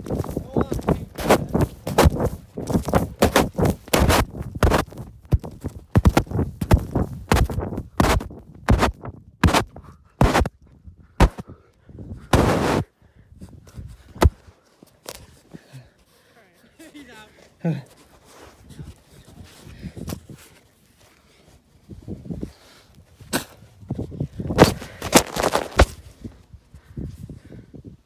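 Rapid thuds and knocks of a camera tumbling along with someone rolling down a sand dune, the microphone bumping against sand and body. The thuds come thick and fast for about the first thirteen seconds, ease off into a quieter stretch, and come again briefly near the end.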